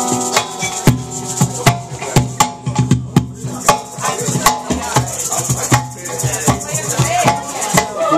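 Live acoustic band playing an instrumental stretch: acoustic guitars strumming chords, with sharp, irregular percussive hits throughout.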